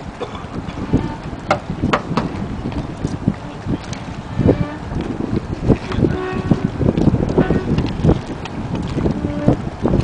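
Wind buffeting the microphone in gusts, a steady low rumble with irregular knocks, and a few short faint pitched sounds in the background.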